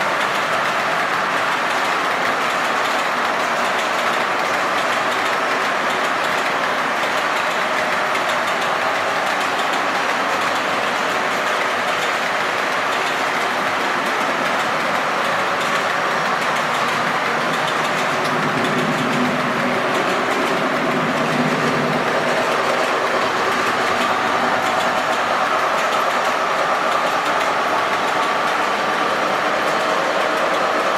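Steady rolling noise of a long O-scale model freight train's metal wheels running on model track, growing slightly louder in the last third with a faint low hum.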